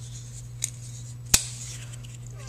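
Kershaw Nerve liner-lock folding knife being closed: a faint click about half a second in, then a sharp, loud snap a little over a second in as the blade shuts into the handle.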